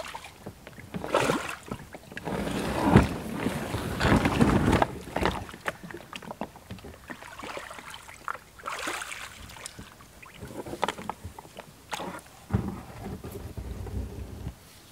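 A loaded kayak being shifted and pushed across a stony, muddy riverbank toward the water: irregular scrapes, knocks and rustles, loudest in the first five seconds and again near the end. The boat is stranded because the river level has dropped overnight.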